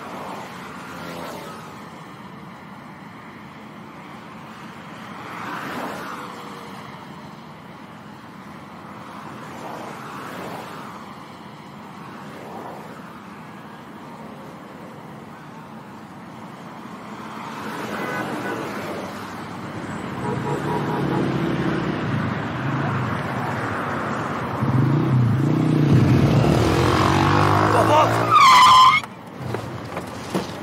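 Road traffic with cars passing one after another, then a Jeep SUV's engine growing louder as it approaches and a brief tire squeal as it brakes hard to a stop near the end.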